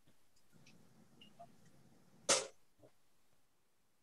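A single short cough about two seconds in, after a few faint clicks.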